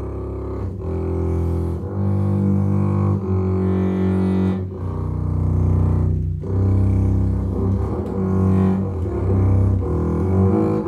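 Hawkes & Son Panormo model five-string double bass played with the bow in its low register: long sustained notes that change pitch every second or so, with a couple of brief breaks between bow strokes.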